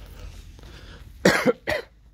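A person close to the microphone gives two short, loud cough-like bursts, a little under half a second apart, a coughing laugh.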